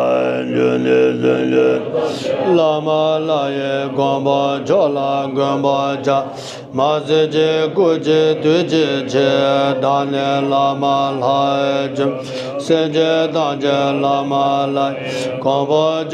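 Group of Tibetan Buddhist monks chanting prayers in unison, long drawn-out syllables held on steady pitches, the chant dropping to a lower pitch about two and a half seconds in.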